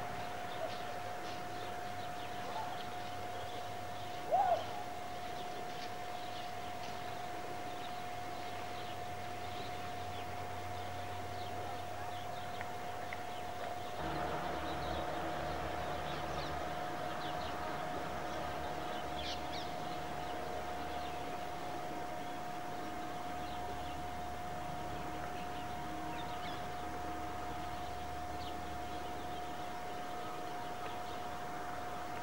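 Early-morning outdoor ambience with scattered faint bird chirps and one louder short bird call about four seconds in, over a steady high-pitched whine.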